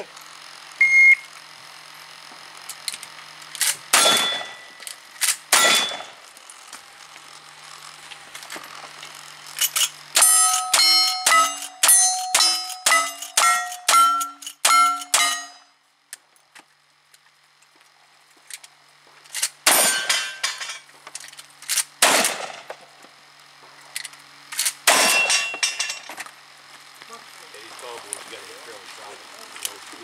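A shot-timer beep, then gunshots at steel targets: two single shots, then a rapid string of about ten rifle shots, each followed by the ring of a struck steel plate. After a pause of a few seconds come several more shots with ringing steel.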